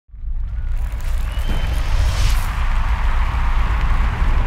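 Cinematic title-sting sound effect: a loud, deep rumble under a rushing whoosh, with a brighter swell about two seconds in.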